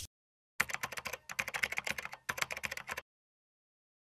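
Keyboard-typing sound effect: a rapid, irregular run of light clicks lasting about two and a half seconds, starting about half a second in.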